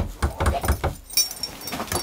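A few knocks on a wooden chest, then a light metallic rattle, as hands work at the chest to open it.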